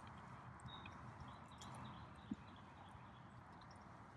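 Near silence: a cougar quietly taking food off a wooden feeding stick, with a few faint soft clicks and one brief soft knock a little past two seconds in.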